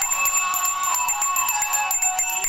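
Puja hand bell rung rapidly and without a break, its ringing tone held steady under the quick strokes, with a melody sounding along with it.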